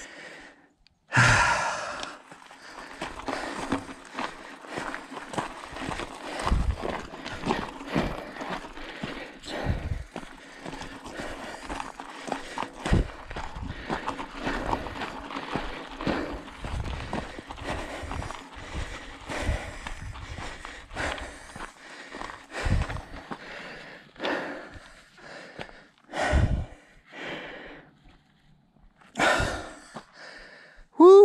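Mountain bike rolling over a rocky gravel trail: knobby tyres crunching on loose stones, with frequent knocks and thumps from the bike rattling over rocks. The rider breathes hard after a climb.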